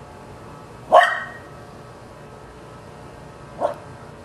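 A dog barking twice at a tennis ball floating out of reach in a pool: one loud bark about a second in, and a fainter one near the end.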